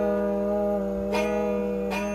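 A man singing one long held note, steady in pitch, over a guitar that is missing a string, strummed twice in the second half.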